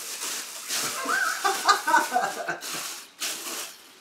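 A man laughing in short, choppy chuckles, starting about a second in and fading out before the end.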